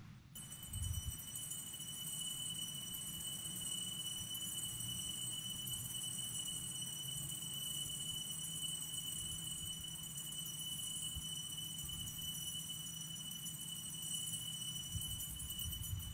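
Altar bells rung without a break in a steady, high-pitched jingling ring, marking the elevation of the consecrated host at the consecration of the Mass. A low room rumble lies beneath.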